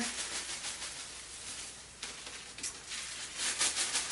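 Paper tassel fringe rustling in quick, repeated soft crackles as it is shaken and pulled apart by hand into single tassels.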